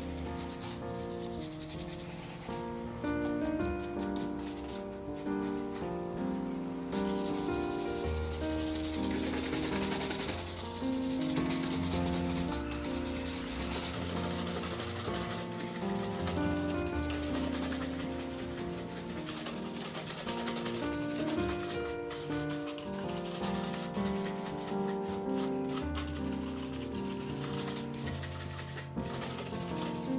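Quick back-and-forth rubbing strokes on the leather of a black cap-toe shoe as it is polished, with soft background music underneath.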